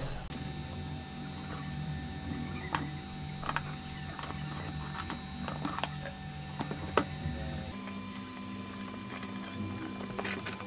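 Several scattered light clicks of alligator clips and multimeter test leads being handled and connected, over a steady low hum.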